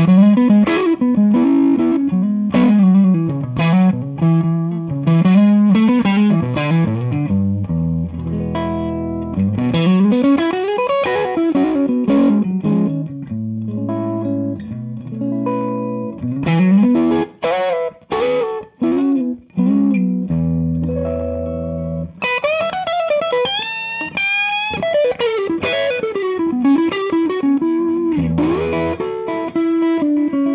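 Strat electric guitar played straight into a Jackson Ampworks El Guapo 100-watt EL34 tube amp on its Super Bass channel, no pedals: a rich, warm clean tone on the edge of breaking up. Chords and single notes with slides, moving to higher bent lead lines about two-thirds of the way through.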